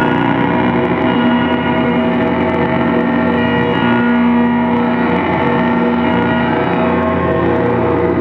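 Live electronic jam music from a keyboard played through a mixing desk and amplifier. It is a dense drone of many held tones with a ringing, gong-like quality, and a low held note cuts out and comes back several times.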